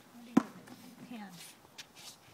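Men's voices talking low, with one sharp thump about a third of a second in and a faint click near the end.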